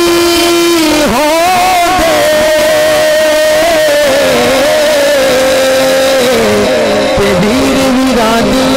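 A man singing a naat, an Urdu devotional song, solo into a microphone over a loud PA. He holds long notes with wavering, ornamented pitch glides, one note sustained for several seconds.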